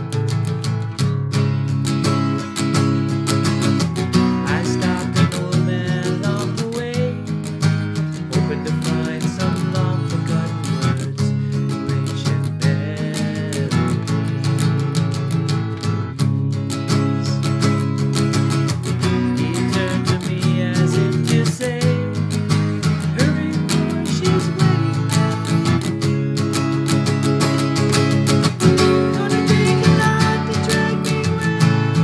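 Capoed acoustic guitar strummed steadily through chords, in a continuous rhythmic pattern.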